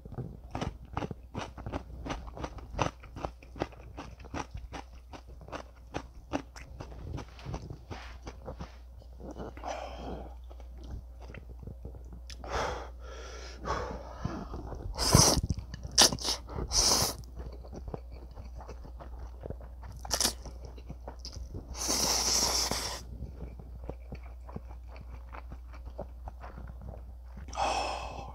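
Close-miked eating: a person crunches and chews pickled radish cubes (chicken-mu), with many quick crisp crunches through the first several seconds. Later come several louder slurps and chews of spicy stir-fried noodles, the longest one near two-thirds of the way through.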